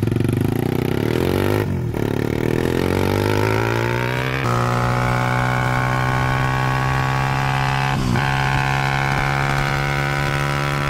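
110cc pit bike's single-cylinder four-stroke engine at full throttle. Its pitch climbs with a short drop about two seconds in as it shifts up, then holds a steady high pitch at top speed, about 50 mph, with one brief dip later on. Wind noise runs underneath.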